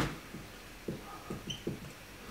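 Dry-erase marker writing on a whiteboard: a light tap as the tip meets the board, then a few faint short strokes, with a brief high squeak about one and a half seconds in.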